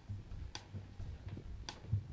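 Footsteps on a stage floor: soft low thuds with three sharp clicks at uneven spacing, as people walk up to their places.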